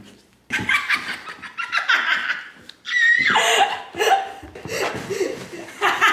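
A woman laughing hard in repeated bursts, starting about half a second in.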